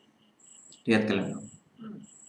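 A cricket chirping in short, high, repeated trills, with a man's brief vocal sound about a second in.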